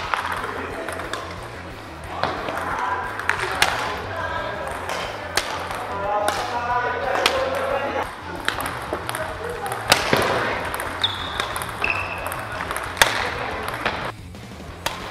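Badminton racket strings striking shuttlecocks in smashes: sharp, echoing cracks a few seconds apart, about five in all.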